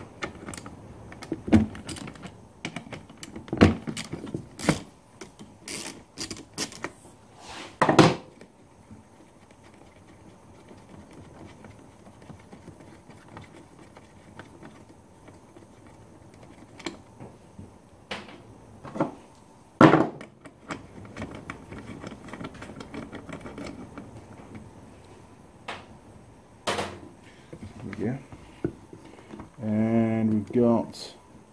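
Socket wrench on an extension bar undoing bolts and the plastic gear-selector housing being handled: irregular metal clicks and knocks. The loudest knocks come about eight and twenty seconds in, with a quieter stretch between.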